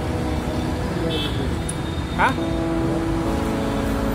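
Steady street traffic rumble, with a vehicle engine's hum joining about three seconds in.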